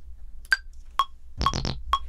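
Ableton Live metronome count-in before recording: four short pitched clicks half a second apart, the first one higher in pitch to mark the downbeat.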